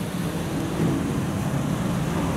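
Steady street traffic noise with a low rumble.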